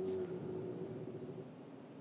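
Faint, steady hum inside a pickup's cab while it sits at a standstill, getting quieter toward the end.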